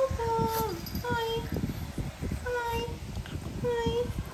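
French bulldog puppy whining: a series of about four short, high, steady whines spread through the few seconds, with low rustling noises between them.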